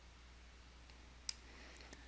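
Near silence with a steady low hum, broken by one sharp click a little past halfway and two fainter ticks near the end.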